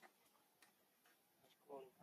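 Near silence with a few faint, isolated clicks; a voice begins near the end.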